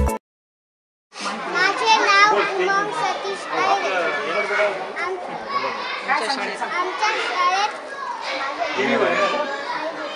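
Background music cuts off at the start; after about a second of silence, a group of children's voices follows, several talking at once.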